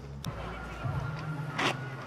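Street background with the steady low hum of road traffic, starting about a second in, and a brief sharp sound shortly before the end.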